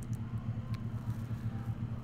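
Steady low background hum with a few faint clicks.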